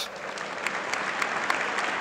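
Audience applauding: a seated crowd clapping steadily, starting right after the host's welcome.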